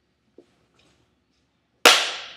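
A single sharp, loud hand clap near the end, with a short echo trailing off: the startle stimulus used to test for a retained Moro reflex.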